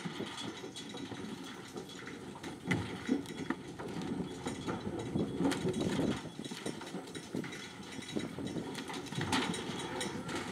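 Cattle hooves clattering and knocking on the livestock trailer's metal floor and ramp as the cows unload, in an uneven run of thuds. A truck engine idles steadily underneath.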